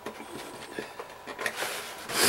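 Plastic packaging ties being cut: a few small snips and clicks, then a rustle of plastic being handled near the end.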